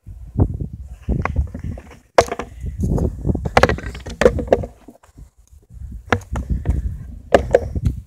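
Skateboard wheels rolling on asphalt, a low rumble that drops out briefly twice, with several sharp clacks of the board.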